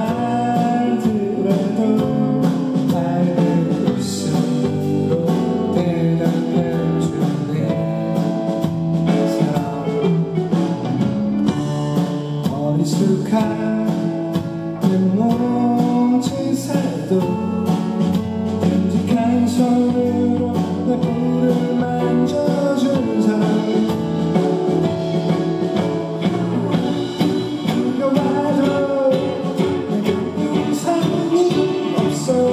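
Live band playing a pop-rock song: a man sings over a hollow-body electric guitar and a drum kit, with a steady beat throughout.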